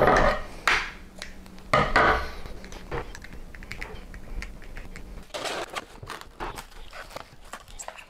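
Handling noises at a metal sheet tray of stuffed sausage: irregular light clicks and taps as the casings are pricked, and rustles as plastic cling wrap is drawn over the tray, loudest in the first couple of seconds.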